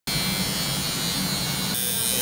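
Tattoo machine buzzing steadily, its tone shifting slightly near the end.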